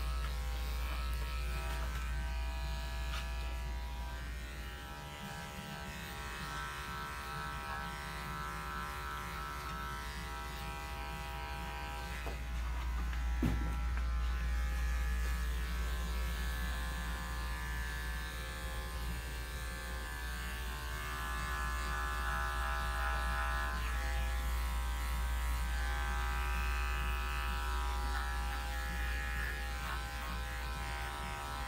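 Andis five-speed electric dog clipper running continuously as it is pushed through a matted coat, a steady motor buzz whose level dips and swells slightly with the work. There is one brief click about thirteen seconds in.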